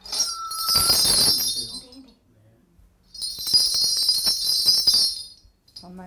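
A cluster of Korean shaman's brass ritual bells shaken in two bursts of bright jingling, each about two seconds long, with a short pause between them.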